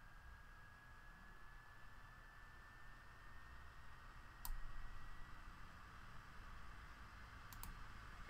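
Computer mouse clicks in a quiet room: a sharp click about halfway through and a couple more near the end. A faint, thin, steady whine underneath rises slightly in pitch.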